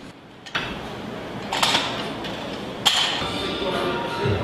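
Noisy room background with two sharp knocks about a second and a half apart, and faint music tones coming in near the end.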